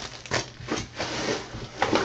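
Trading cards being handled: a few soft rustles and taps of card stock, irregular and brief.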